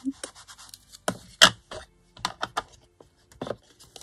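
A string of short scratches and clicks as a hand-held ink blending tool with a foam pad is handled and worked on a Distress ink pad, ready for inking paper edges.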